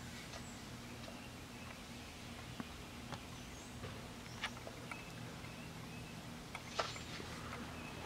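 A fledgling songbird gives short, high, thin chirps every second or two over a low steady hum.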